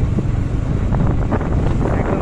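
Wind buffeting the microphone of a moving vehicle: a loud, steady low rumble, with the road and engine noise buried under it.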